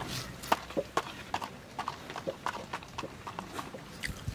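Fingers breaking into a puffed, crisp dal puri on a steel plate: a quick, irregular run of small crackles and clicks.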